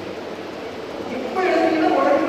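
Steady background din of a hall, then a person's voice starts speaking about a second and a half in.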